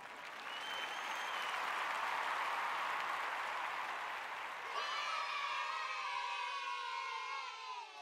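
Outro logo sound effect: a noisy rushing swell for about four and a half seconds, then a ringing tone with many overtones that slides slowly downward and fades out.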